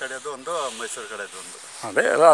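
A man talking, more softly in the middle, over a steady high hiss.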